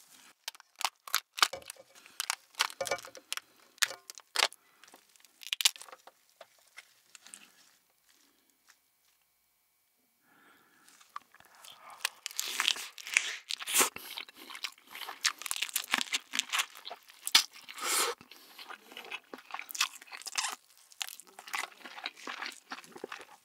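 Shell of a cooked flower crab cracked and pulled apart by hand, with a run of sharp snaps for the first few seconds. After a few seconds of near silence, close-miked biting, crunching and chewing as crab pieces are eaten.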